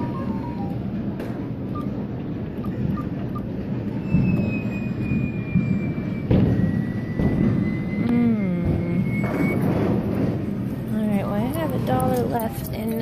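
Busy arcade din: a steady wash of background chatter and electronic game music, with a long high electronic tone held from about four seconds in and wavy sliding sound effects near the middle and end.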